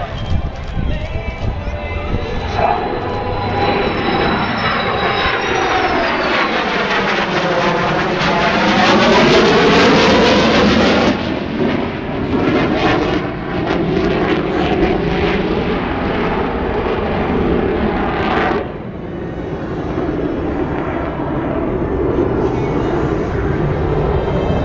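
F-4 Phantom jet making a low pass, its engine roar swelling to the loudest point about ten seconds in, with a sweeping dip and rise in pitch as it passes closest. The roar then carries on more evenly and falls off sharply near the end.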